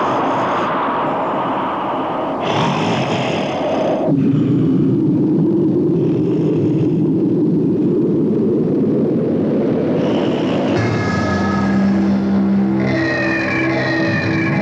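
Dramatic background score: a dense, steady swell without clear notes, concentrated low, then sustained instrumental notes come in about eleven seconds in and thicken near the end.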